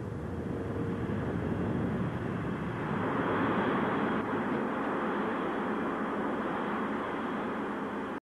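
Ryan X-13 Vertijet's turbojet engine running: a steady jet roar that swells somewhat a few seconds in.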